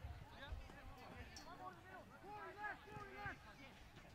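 Faint, distant shouts and calls from several voices across a rugby league field.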